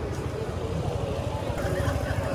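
City street ambience: a steady low traffic rumble with faint voices of passers-by in the background.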